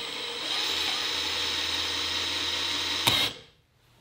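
Makita 18-volt cordless hammer drill running in reverse at low trigger speed while the chuck is held by hand, its keyless chuck spinning open with a steady motor whine. It stops with a click about three seconds in.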